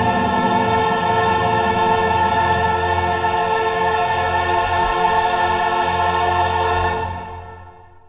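Choir and orchestra holding one long loud chord, which breaks off about seven seconds in and rings away.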